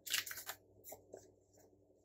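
Paper sticker sheets rustling as they are picked up and handled: a short crinkly burst in the first half-second, then a few faint ticks.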